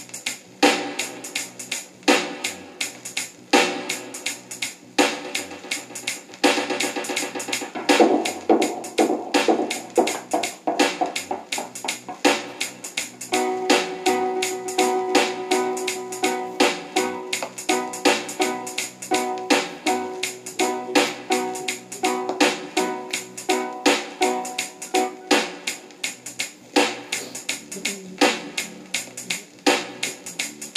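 A reggae dub version 45 playing on a console record player: a steady drum beat, with keyboard chords coming in about halfway through and dropping out a few seconds before the end.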